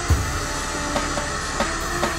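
Handheld hair dryer blowing steadily on a section of hair, with background music with a steady drum beat playing over it.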